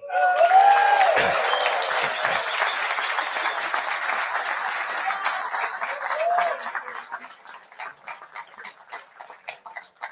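Audience applauding: a dense burst of clapping that thins to scattered single claps over the last few seconds.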